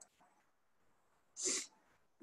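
Near silence, broken about one and a half seconds in by one short, sharp breath noise from a person.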